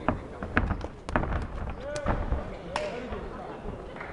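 Boxing gloves landing punches: a flurry of sharp impacts, several in quick pairs, over the first three seconds.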